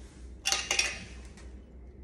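A glass jar and its lid handled: a brief cluster of clinks about half a second in, then only a low steady hum.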